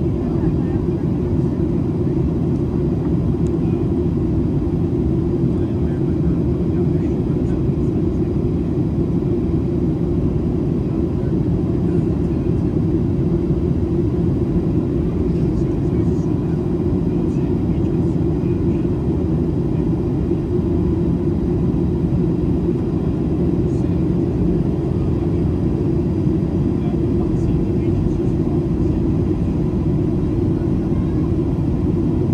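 Steady cabin noise of a Boeing 737-800 in descent: its CFM56-7B engines and the airflow past the fuselage make a deep, even rumble that holds level throughout.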